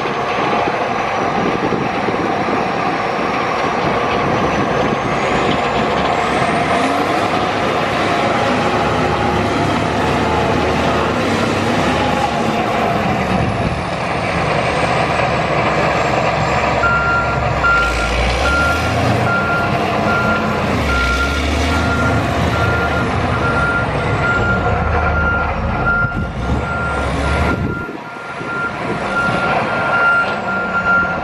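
Volvo motor grader's diesel engine running under load as the machine drives, its revs rising and falling with a high whine that climbs and drops with them. A little past halfway a reversing alarm starts beeping steadily and keeps on.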